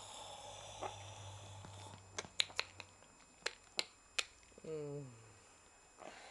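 A run of sharp clicks, then a dog's short groan that falls in pitch near the end.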